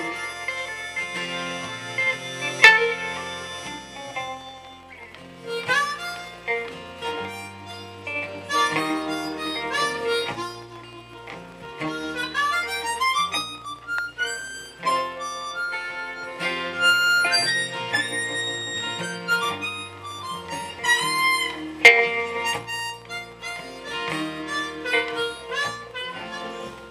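Harmonica solo played into a microphone, its notes often bending up and down in pitch, over a hollow-body electric guitar accompaniment.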